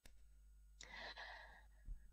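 Near silence broken by a small click, then a woman's soft breath in, about a second long, just before she speaks, picked up by a headset microphone on a video call.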